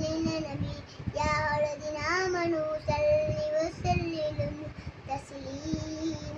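A young boy chanting Arabic recitation in a sing-song melody, with long held notes and short breaths between phrases.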